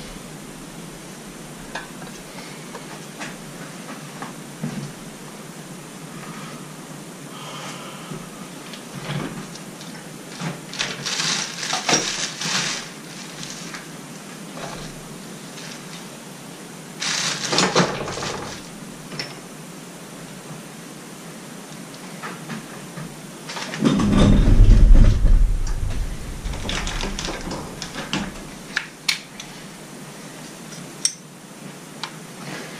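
Intermittent handling sounds of hand tools and small metal hardware: scattered clinks and clatters as tools are picked through, with a heavier low bump and rumble about three-quarters of the way through as the loudest moment.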